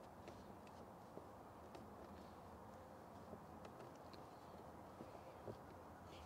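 Near silence, with a few faint, soft ticks scattered through it from fingers and a cloth tucking the edge of a wet screen protector film into a dashboard gauge cluster bezel.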